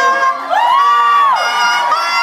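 A high whooping cry that glides up, holds for about half a second and glides back down, with crowd cheering over a saxophone band playing live.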